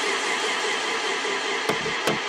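A steady rushing noise with no beat, then sharp drum hits starting near the end as an electronic dance beat comes in.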